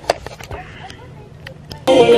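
A faint voice and a single light click in a quiet room, then background music starts abruptly and loudly just before the end.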